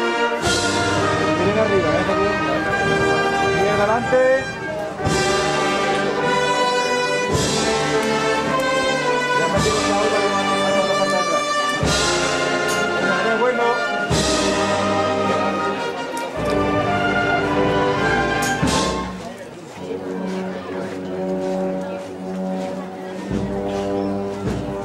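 Brass band playing a processional march in sustained chords, with a strike about every two seconds; it gets quieter about three-quarters of the way through.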